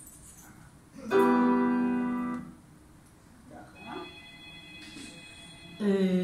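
A piano chord from a recording played over loudspeakers sounds about a second in and rings on, fading over about a second and a half. Quieter sounds follow, and another loud note begins at the very end.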